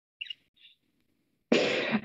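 Mostly quiet, then about one and a half seconds in a short, loud burst of breath from a woman, a breathy laugh just before she starts to speak.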